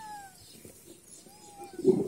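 A drawn-out meow that falls in pitch and fades in the first half second, then a shorter, quieter meow that rises and falls about a second and a half in. Voices come in loudly near the end.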